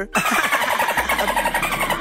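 A loud engine-like sound, a fast even rattling buzz lasting about two seconds.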